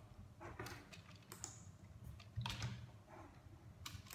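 A few faint, irregular keystroke clicks on a computer keyboard as he types to look up a website.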